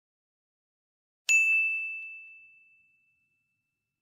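A single bell-like ding sound effect about a second in: one clear, bright tone that rings and fades away over about two seconds.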